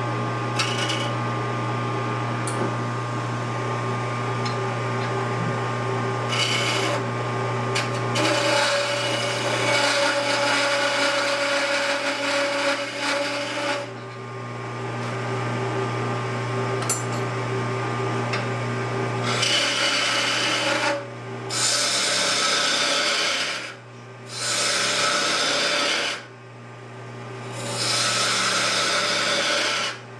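A wood lathe hums steadily while a turning tool is pressed into the spinning wood in repeated passes, each lasting a few seconds. The longest pass starts about eight seconds in and runs about five seconds, and several shorter ones come close together in the second half.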